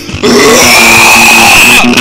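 Amateur emo rock song: a loud, harsh noise burst comes in just after the start over continuing bass and guitar notes, then eases off near the end.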